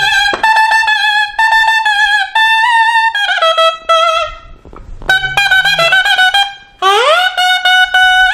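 Nadaswaram, the South Indian double-reed horn, playing a solo melody in short phrases, with a brief break about halfway and a quick upward slide into a held note near the end.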